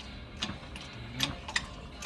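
Shop press pressing out an axle carrier bearing: a few sharp metallic clicks about a second apart over a low rumble.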